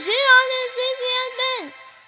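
A high-pitched voice singing a quick string of chemical element names to music; the sung phrase breaks off near the end.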